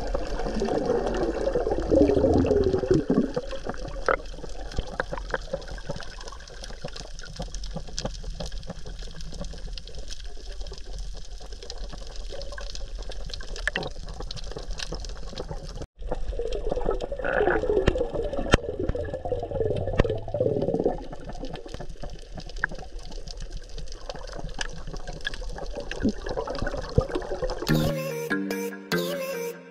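Underwater sound of water rushing and bubbling as a free diver swims and dives, heard with the microphone submerged. It swells in the first few seconds and again a little past halfway, with a momentary cut-out about halfway through.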